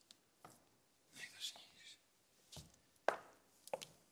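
Quiet, scattered sharp knocks and rustles of a man moving on a bare stage floor in hard-soled shoes and handling a cloth jacket, the loudest knock about three seconds in.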